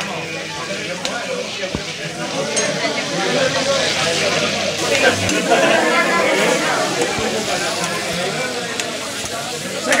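Cuttlefish meatballs sizzling in a frying pan as they are stirred on the hob. The sizzle grows louder from about three seconds in, over background voices.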